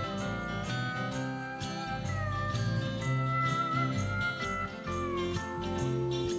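Steel guitar playing a lead line with sliding notes over a country gospel band keeping a steady beat.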